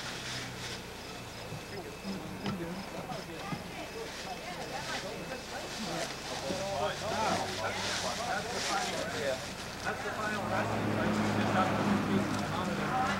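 Indistinct chatter of a group of people talking at a distance, over a low steady hum that grows louder near the end.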